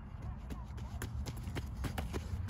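Quick, irregular light clicks, several a second, over a low wind rumble on the microphone.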